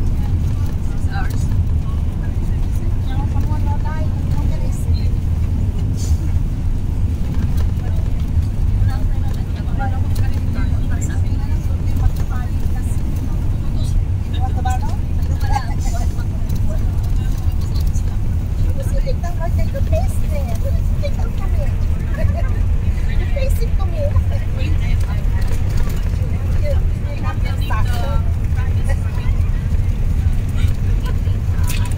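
Steady low drone of a moving coach bus heard from inside the passenger cabin, with quiet scattered chatter of passengers over it.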